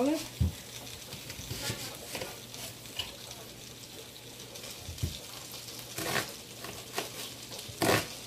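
Kitchen knife cutting an onion on a countertop: a few scattered knocks and taps as the onion is handled, then sharper cuts about six seconds in and at the end. Underneath is a faint steady sizzle of food frying.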